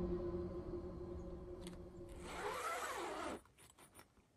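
Background music with held tones, ending about three and a half seconds in. Just before it ends, a whoosh rises and falls in pitch for about a second.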